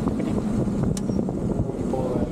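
Race motorcycle engine running at low pit-lane speed, with wind buffeting the onboard microphone. A single short click about a second in.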